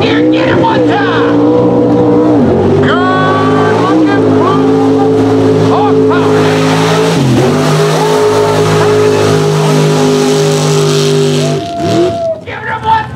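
Mud bog truck engine at wide-open throttle during a pit run, holding a high, steady pitch with a few brief dips, then dropping away near the end.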